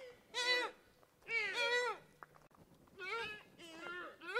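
A series of high-pitched bleats, each about half a second long, with a pause in the middle.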